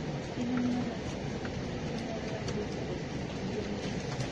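Steady low rumbling background noise with no speech.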